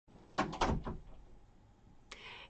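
Handling noise from a hand working close to the webcam and microphone: three or four short knocks and rubs in the first second, then quiet room tone.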